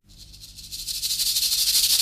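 A fast, continuous high rattle, like a shaker or a rattlesnake's tail, fades in from silence and builds over about a second.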